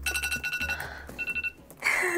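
Electronic timer alarm ringing twice on two steady high tones as the background music fades out. It marks the end of a 20-minute study interval, at forty minutes elapsed.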